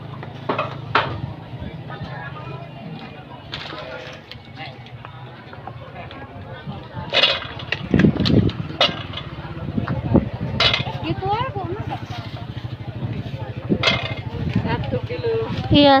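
Busy market stall: voices in the background over a steady low hum, with occasional light knocks as carrots are picked through in plastic crates.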